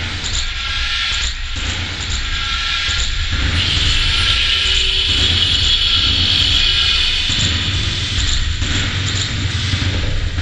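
A loud, steady rumbling drone with a hiss over it, swelling a little from about four to seven seconds in.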